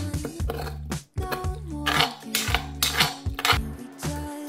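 Metal spoon scraping and clinking against the bottom of a stainless steel frying pan in several short strokes, working stuck-on fried rice loose, over background music.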